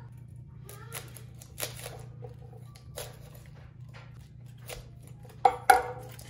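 Cauliflower leaves being snapped and torn off the head by hand: scattered crisp cracks, with two louder snaps near the end.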